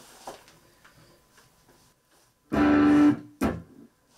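Electric guitar played through a Roland Micro Cube practice amp: after some faint handling clicks, a single chord rings for about half a second and is cut off short, then a brief second stroke follows.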